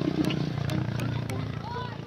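Voices of people talking close by over a steady low hum, with a clearer voice near the end.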